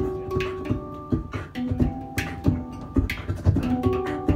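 A hang (steel handpan) playing ringing melodic notes together with a beatboxer's vocal kicks and snares in a steady groove.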